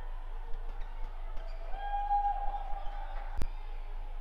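A badminton racket strikes a shuttlecock once, a sharp crack about three and a half seconds in, as play restarts with the serve. Before it comes a drawn-out high tone about two seconds in, over light court noise and a low hum.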